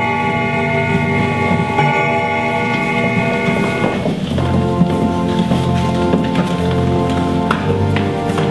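Slow organ music holding long sustained chords, moving to a new chord about halfway through. Soft shuffling and a few light knocks sound underneath as people walk in and sit on wooden chairs.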